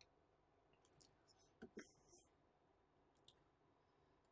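Near silence: room tone with a few faint clicks from a laptop as the slides are scrolled, a pair about one and a half seconds in and a small tick later.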